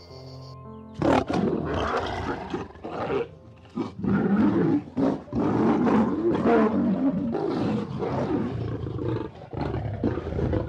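A lioness calling over and over in a run of loud calls with short breaks, starting about a second in. It follows a brief few musical tones.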